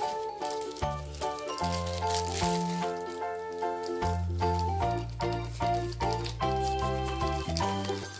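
Background music: an instrumental tune with a bass line stepping from note to note every half second or so and a melody of held notes over it.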